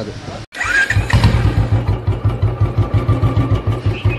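Motorcycle engine coming in about half a second in and idling with an even, rapid thump, about seven beats a second.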